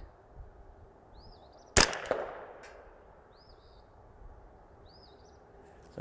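A single shot from a KIDD 10/22 .22 rimfire semi-automatic rifle, about two seconds in: a sharp crack with a short fading echo. Faint bird chirps sound a few times around it.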